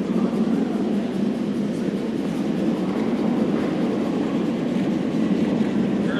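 Granite curling stone running down pebbled ice, a steady low rumble.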